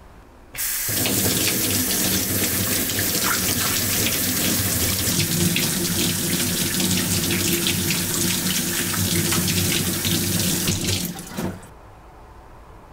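Kitchen tap running onto hands rubbing a stainless steel soap bar over a stainless steel sink. The water comes on suddenly about half a second in, runs steadily and is shut off near the end.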